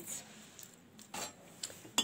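Kitchenware being handled: a few light clicks, a brief scraping noise about a second in, and a sharp knock near the end.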